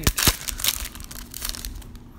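Foil wrapper of a baseball card pack being torn open and crinkled by hand: a run of sharp crackles, loudest in the first half second, thinning out near the end.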